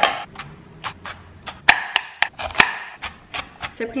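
Kitchen handling sounds: an irregular run of sharp clicks and knocks as a head of cos lettuce is unwrapped and its leaves are snapped off. The two loudest knocks come about halfway through.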